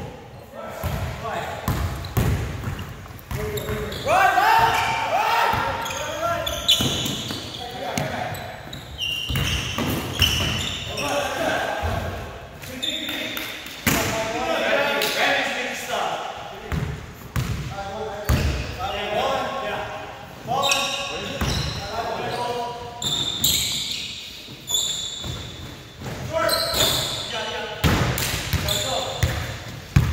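A basketball dribbled and bouncing on a hardwood gym floor, short sharp knocks throughout, mixed with players' voices calling out, echoing in a large hall.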